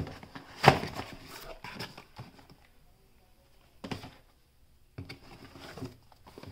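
Cardboard product boxes lifted out of a shipping carton and set down on a wooden tabletop: a sharp knock about a second in, another near four seconds, and a few more knocks and rustles near the end.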